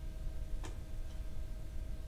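Quiet room noise with a low rumble and a faint steady electrical hum, broken by one sharp click a little over half a second in and a fainter tick shortly after.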